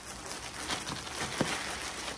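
Plastic cellophane wrap crinkling and crackling in irregular bursts as it is wrapped and tucked by hand, with one sharper crackle about one and a half seconds in.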